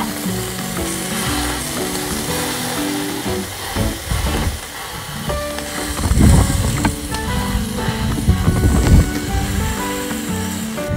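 Beef steak sizzling on a portable gas grill plate, the flame just turned down a little because it was too strong. Background music with a run of notes plays underneath, and from about six seconds in low rumbling bumps come in while the steak is pressed and shifted with chopsticks.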